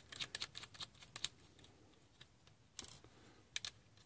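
Faint, light clicks and taps of hands handling a plastic-and-metal laptop hard drive caddy and a screwdriver. There is a quick flurry in the first second or so, then a few single clicks near the end.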